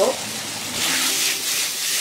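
Diced pork belly in sauce sizzling in a hot wok. About two-thirds of a second in, the sizzle grows louder in uneven pulses as the food starts to be stir-fried.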